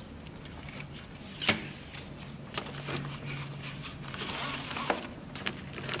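Soft rustling of a car seat's fabric seat pad and nylon harness webbing being handled and pulled through, with scattered small ticks and one sharper rustle about one and a half seconds in.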